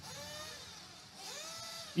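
Faint motor of a 1/8-scale off-road RC car running on the track, its pitch rising and falling twice as it speeds up and slows down.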